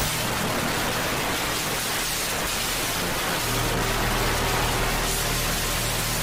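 Steady hiss of static noise, like a detuned television, with a faint low hum coming in about halfway through.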